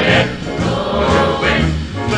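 A mixed swing choir singing in close harmony over a small swing band, with a bass line moving beneath. It is a 1950s mono recording.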